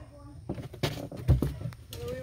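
Indistinct voices with a few sharp knocks and one heavy low thump just past the middle, over a steady low hum.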